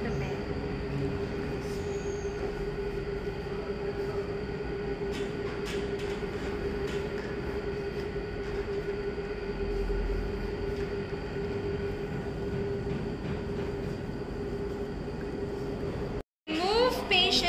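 A steady mechanical hum with one strong held mid-low tone, over faint rustling of cloth as the bed linens are handled.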